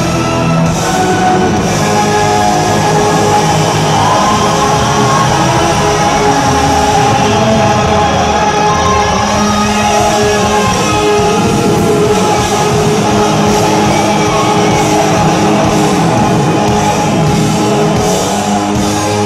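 Rock band playing live at full volume, with an electric guitar over the band, steady and unbroken.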